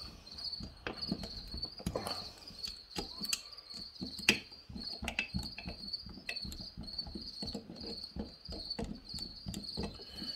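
Quarter-inch nut driver turning the crankcase bolts on a McCulloch Pro Mac 850 chainsaw engine block, giving faint scattered metal clicks and taps, the sharpest about four seconds in, over a steady high pulsing chirp.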